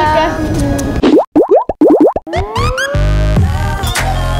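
Cartoon transition sound effect: a quick run of about seven steep rising 'boing' glides, then a long arching tone and a low pulsing electronic beat as a short music sting begins.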